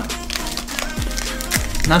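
Foil wrapper of a baseball card pack crinkling and crackling as it is handled and torn open, over steady background music.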